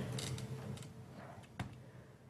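A few faint, short clicks and light knocks of computer parts being handled as a motherboard is fitted onto its mount, the clearest about a second and a half in.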